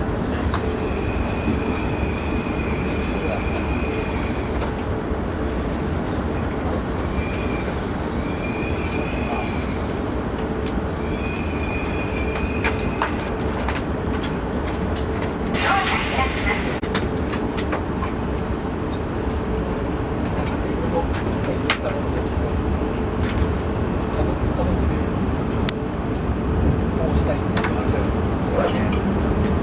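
Running noise heard from inside a Hayabusa Shinkansen train moving slowly through a station: a steady low rumble. A high whine comes and goes three times in the first half, and a short hiss sounds about halfway through.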